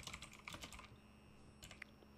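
Faint computer keyboard typing: soft keystrokes at the start, a short pause about a second in, then a few more keystrokes near the end.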